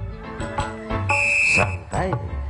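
Live dangdut band music, with a piercing high held note about a second in that lasts about half a second.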